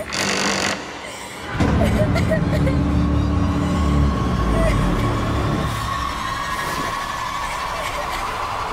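Horror sound effects for a cartoon scare: a short sharp swish right at the start, then, about a second and a half in, a loud deep rumble that lasts a few seconds and fades into a held high tone.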